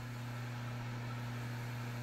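Steady low hum: one low tone with a fainter one an octave above, unchanging, as from a running electric motor or mains-powered equipment.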